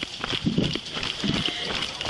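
Hurried footsteps of a person moving fast, knocking a few times a second, heard through a jostling body-worn camera, with a steady hiss behind them.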